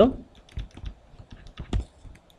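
A stylus tapping and scratching on a tablet computer's screen while handwriting a short word: a few irregular light clicks, the strongest near the end.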